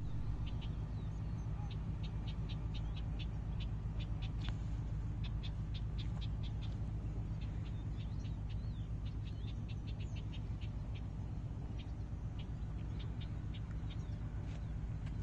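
Small birds chirping, with many short, irregular high chirps, over a steady low hum.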